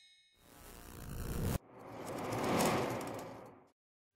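Logo intro sound effects: a rising whoosh that cuts off abruptly about one and a half seconds in, then a second, fuller whoosh that swells and fades away over about two seconds.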